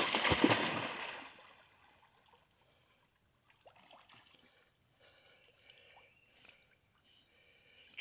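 A golden retriever splashing through shallow river water as she plunges in after a thrown stick, the splashing loud at first and fading out within about a second and a half as she swims off.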